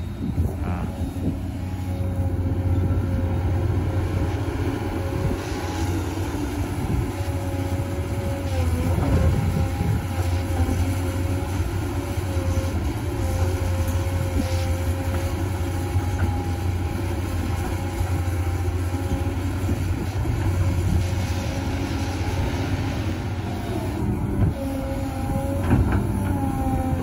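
An XCMG XE215C crawler excavator's engine running under load as it digs and swings wet clay: a steady low drone with a whine above it that wavers and dips briefly about nine seconds in.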